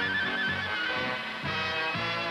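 Instrumental background music with a steady beat, about two beats a second.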